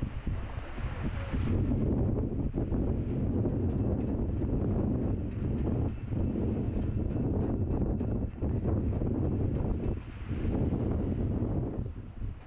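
Wind buffeting the microphone, a dense low rumble of noise that grows stronger about a second and a half in.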